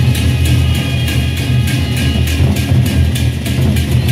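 Sasak gendang beleq ensemble playing: large double-headed barrel drums beat a heavy low pulse under a fast, steady run of clashing hand cymbals, about four to five strokes a second, with ringing metal overtones.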